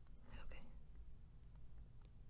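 A brief, faint whispered breath from the narrator close to the microphone, about half a second long near the start, over a faint steady low hum.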